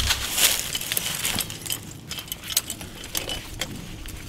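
Steel 220 body-grip trap and its hanging chain clinking and rattling as the set trap is handled, with a sharp metallic click right at the start.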